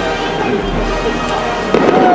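Fireworks going off in the sky overhead, with a sharp bang near the end.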